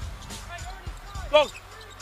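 A basketball being dribbled on the hardwood court, a few sharp bounces over the low arena rumble. A short shout from a player cuts in about one and a half seconds in.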